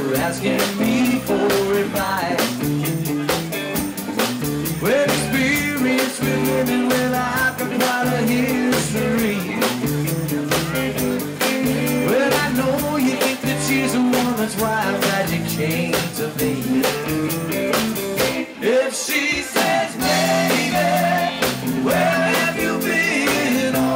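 Live blues-rock band playing: electric guitar over bass guitar and a steady drum beat. The low end drops out briefly near the end before the band comes back in.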